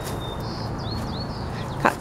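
Small bird calling: a thin high whistle, then two short rising chirps about a second in, over a steady low background rumble.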